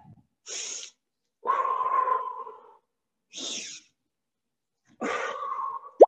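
A woman breathing hard through exercise: short hissing breaths alternating with longer, voiced exhales, four breaths in all.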